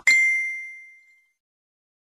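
A single bright, bell-like ding sound effect that strikes at the start and rings out, fading away over about a second.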